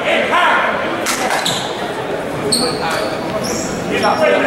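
Spectators' voices and chatter echoing in a gymnasium, with a couple of sharp knocks about a second in.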